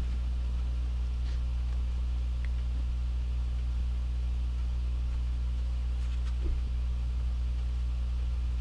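A steady low hum with no other clear sound, broken only by a couple of faint ticks.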